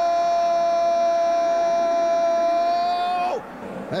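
A television football commentator's long held shout of "gol" on one steady high note, dropping away about three seconds in.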